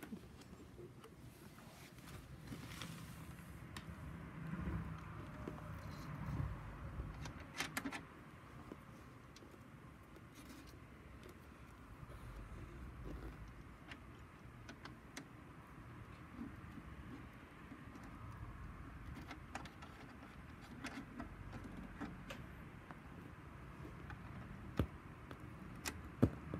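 Faint handling sounds of speaker wire being fitted to an amplifier's screw-on speaker terminals: light rustling with scattered small clicks.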